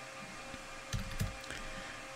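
A few short keystroke clicks on a computer keyboard about a second in, over a faint steady hum.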